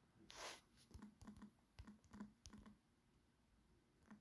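Faint typing on a smartphone's on-screen keyboard: a quick run of about ten light ticks. A short soft hiss comes just before the ticks start.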